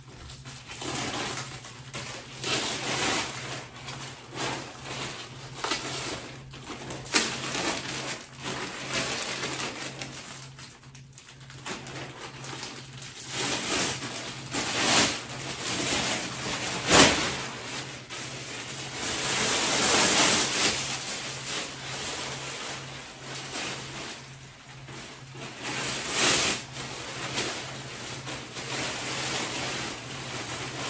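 Black plastic garbage bag rustling and crinkling in irregular bursts as it is handled and shaken open, with one sharp snap a little past the middle.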